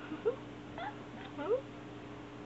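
Black kitten mewing: several short, high calls that rise in pitch, the two loudest about a second apart.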